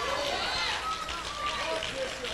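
Faint voices of a church congregation calling out responses while the preacher pauses.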